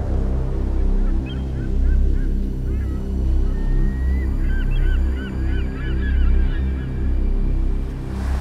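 Gulls calling, a run of short repeated cries that thicken into several overlapping calls in the second half, over a low, pulsing music drone.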